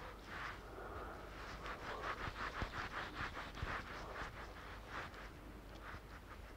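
Fingertips patting and rubbing liquid foundation onto facial skin close to the microphone. It is a faint, soft rubbing in quick repeated strokes, about three or four a second.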